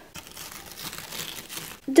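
A faint, even crinkling rustle that starts just after the beginning and stops shortly before the end.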